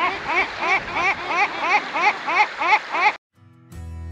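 A bird calling in a quick, evenly spaced run of rising notes, about three a second, over a steady rush of surf. The calls cut off abruptly about three seconds in, and acoustic guitar music begins near the end.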